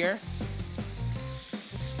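Pasta sauce sizzling in a hot skillet of browned ground beef and Italian sausage, a steady high sizzle just after it is poured in.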